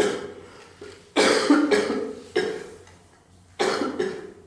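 Coughing: a run of about four coughs, a little over a second apart, the second one the loudest.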